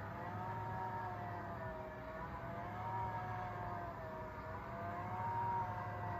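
Astomi smart roller shade's battery-powered motor running as it rolls the shade up: a steady whir with a whine that wavers slightly in pitch.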